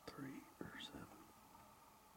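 A person whispering a few hushed words within the first second, with a couple of sharp clicks among them.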